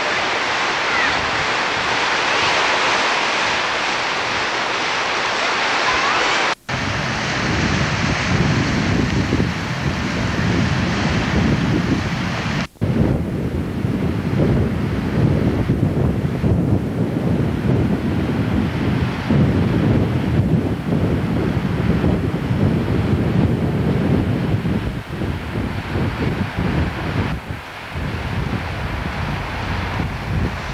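Small waves breaking on the shore, a steady hiss of surf. About six seconds in the sound cuts briefly, and from then on gusty wind buffets the camcorder microphone with a rough low rumble, with another short cut near the middle.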